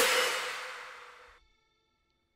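The last moment of a future bass loop played back from FL Studio: after the chords cut off, a hissy tail with a single held note fades out over about a second and a half, leaving near silence.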